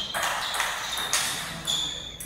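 Table tennis rally: the ball clicks off paddles and table in quick alternation, about two sharp hits a second, each with a short high ping.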